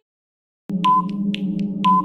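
Countdown-timer sound effect: a steady low drone with a short ping once a second and a fainter tick between pings, starting after a brief silence about two-thirds of a second in.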